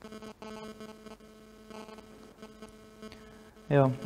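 Steady electrical mains hum made of several constant pitched tones, heard through the recording's sound system.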